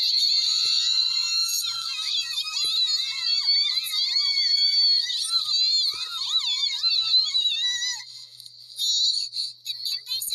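Several high-pitched voices wailing at once, their pitch wavering up and down, loud and continuous, then breaking into short choppy bits near the end.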